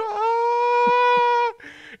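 A steady, buzzy tone held at one unchanging pitch for about a second and a half, then a short, much fainter sound.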